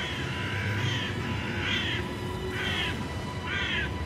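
A crow cawing repeatedly, about one harsh call a second, over a steady low drone of eerie background music.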